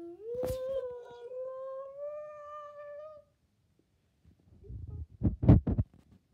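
A voice making a long wordless hum that slides up in pitch and holds for about three seconds: a made-up creature language that is translated right afterwards. Near the end comes a quick cluster of loud, low thumps.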